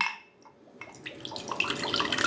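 Rice wine vinegar poured from a bottle into a glass measuring cup. The trickle and splash of the liquid starts about a second in and keeps going.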